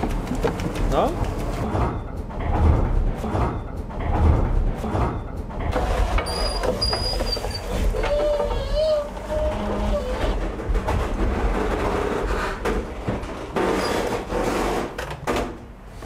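Wooden post-windmill machinery running: the millstones and wooden gearing give a continuous low rumble with irregular creaks and knocks, and a few brief high tones about six and eight seconds in.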